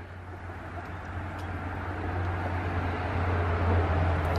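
A steady low rumble with a hiss over it, growing gradually louder across the few seconds, of the kind a running vehicle engine makes.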